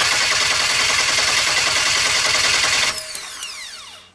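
GM 4.3L Vortec V6 turning over on its starter motor in a rapid, even rhythm for about three seconds without catching, then the starter spinning down with a falling whine. This is the engine's crank / no-start fault, with no spark from the coil.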